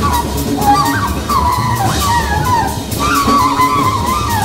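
Free-jazz trio playing live: a saxophone plays high phrases that slide and bend up and down in pitch, over drums with cymbals and double bass.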